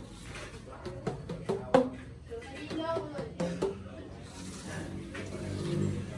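Bamboo tube instrument struck on the open ends of its tubes with a flat paddle, giving short hollow pitched notes: about eight strikes in the first four seconds, the loudest near two seconds in. Voices follow near the end.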